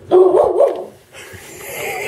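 Pit bull-type dog giving one loud, wavering bark-like call lasting under a second, excited for a treat. A softer rustling follows.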